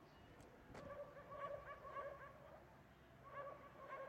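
Faint runs of quick, short high-pitched cries from a small pet animal, several a second: one run about a second in and another near the end, with a single click just before the first.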